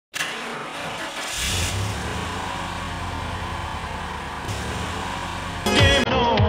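Car engine sound effect running steadily with a low hum. Just before the end a loud, sudden sound cuts in, with pitches sliding downward.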